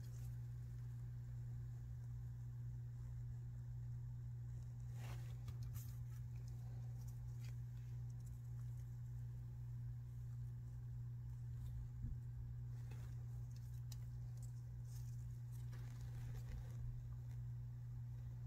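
A steady low hum, with faint scattered rustles and light ticks as strips of construction paper are handled and pressed into wet resin in a tray mold.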